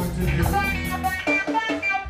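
A live band playing, with electric guitar picking a run of separate notes over bass guitar and drums.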